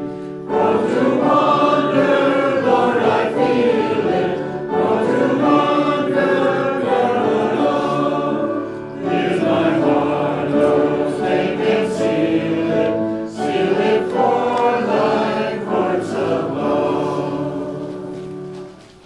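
A group of voices singing a hymn together, in sung phrases of about four seconds with brief breaks between them.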